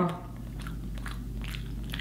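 Close-miked chewing of a mouthful of fish sandwich: soft, irregular wet mouth clicks and smacks, several a second, over a low steady hum.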